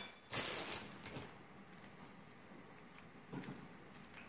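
Hands handling food at a kitchen counter: a brief soft rustle about half a second in, then quiet room tone with a faint low sound near the end.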